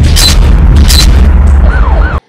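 Dramatic news-bulletin transition sound effect: a loud, sustained deep boom with two sharp crashing hits under a second apart, and a siren-like wail rising and falling near the end.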